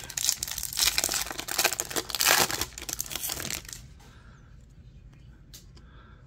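A trading-card pack's foil wrapper being torn open and crinkled in the hands, a dense crackling rip lasting about three and a half seconds, then only a few faint clicks of the cards being handled.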